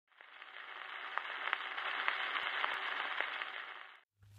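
Faint surface noise of a 78 rpm shellac record as the stylus runs in the lead-in groove before the music: a steady hiss with scattered clicks and crackles. It fades in shortly after the start and fades out near the end.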